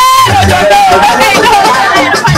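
A voice over loud music from a DJ's mixing desk and sound system, opening with one long held note, then shorter lines over a steady bass.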